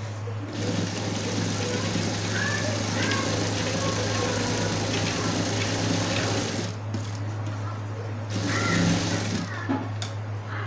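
Sewing machine stitching through a thick ruffled fabric rug, running in long stretches with short stops about seven seconds in and again near the end, over a steady low hum.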